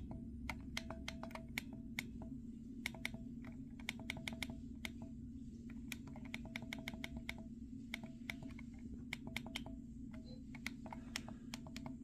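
Flipper Zero D-pad buttons clicked again and again in quick runs of several presses, stepping the PWM generator's frequency down. The clicks are sharp and faint, over a steady low hum.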